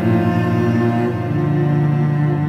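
Slow ambient cello music: several long, sustained bowed cello notes overlapping, with a new low note coming in a little past the middle.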